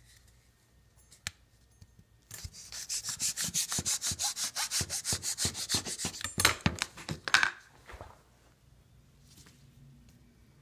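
Kitchen knife sawing back and forth through a layer of grapes held between two plastic lids, the blade rasping against the lid rims. It starts about two seconds in with rapid, even strokes, about six a second, and ends with a few slower strokes.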